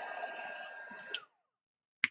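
Embossing heat tool's fan motor running with a faint steady whine, then a click about a second in as it is switched off, and the whine falls in pitch as the motor spins down.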